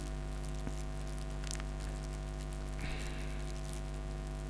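Steady electrical mains hum on the recording, with a few faint clicks, likely keyboard or mouse, and a brief faint hiss about three seconds in.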